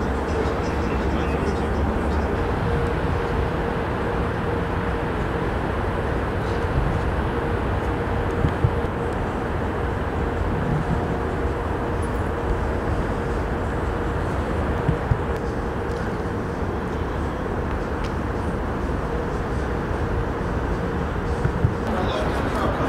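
Steady city street noise: a continuous rumble with a constant hum, broken by a few faint clicks.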